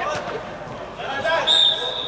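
A football struck once with a thud just after the start, echoing in a large indoor sports hall, followed by players shouting. About a second and a half in, a loud, shrill high sound cuts in.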